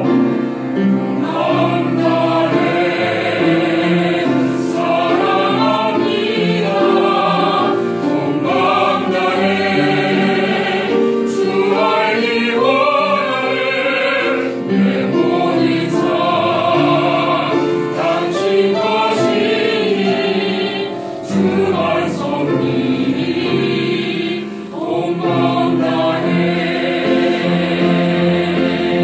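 Mixed choir of young men's and women's voices singing a Korean worship song in harmony, with piano accompaniment.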